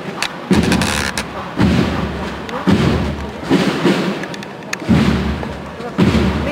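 Slow, steady procession drum beats, about one a second, each deep beat ringing on until the next.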